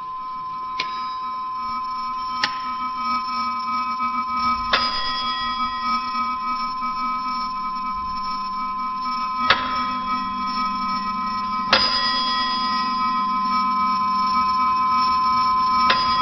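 Mechanical metronome ticking sharply five times at uneven spacing, over steady high ringing tones that grow gradually louder.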